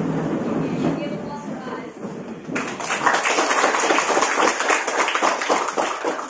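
A class of students sitting down at their desks, with chairs and desks scraping and voices chattering. About two and a half seconds in, many hands start clapping together.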